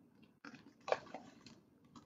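Faint rustling and handling sounds of a picture book's page being turned, in a few short soft bursts.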